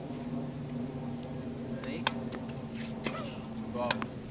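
Tennis balls making sharp knocks on a hard court, a few scattered through the second half, with the sharpest just before the end as a ball is struck off a racket. A steady low hum runs underneath.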